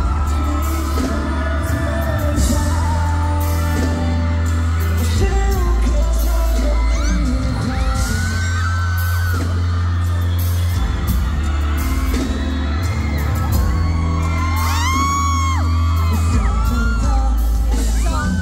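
Live pop/hip-hop concert: a song with a heavy bass and steady beat, singing over it, and the audience screaming. The high, gliding screams are loudest in bursts about eight seconds in and again around fifteen seconds.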